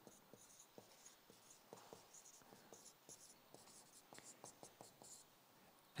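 Faint marker pen strokes on flip chart paper as figures are drawn: many short high-pitched scratches in a row, stopping about five seconds in.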